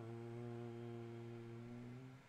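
A man's voice holding one steady, low hum for about two seconds.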